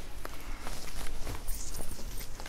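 Folded silk sarees being handled on a tabletop: soft rustling of the fabric with a few light knocks, the rustle stronger near the end.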